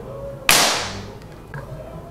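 A Crosman 392PA .22 multi-pump pneumatic air rifle firing a single shot: one sharp crack about half a second in, fading out quickly.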